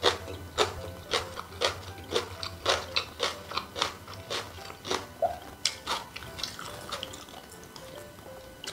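Close-miked wet chewing of a mouthful of cold kimchi noodles, moist smacking clicks about twice a second, growing fainter near the end.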